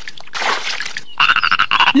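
Cartoon frog croak sound effect, a rapid rattling croak that starts a little over a second in, after a short breathy laugh.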